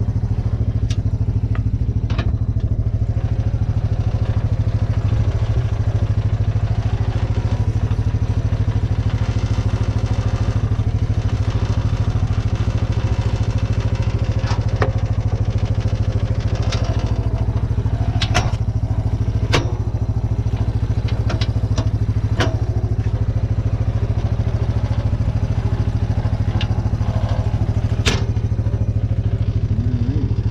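Kawasaki Prairie 300 ATV's single-cylinder four-stroke engine idling steadily. Now and then there are sharp metallic clicks and knocks from the plow's frame and mount being handled.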